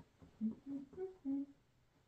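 A man humming a short tune: four brief notes that step up in pitch and then fall back.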